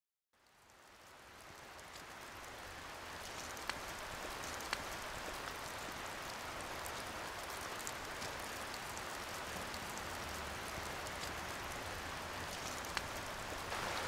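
Steady wash of water noise that fades in over the first two seconds after a brief dead silence, with a few faint ticks.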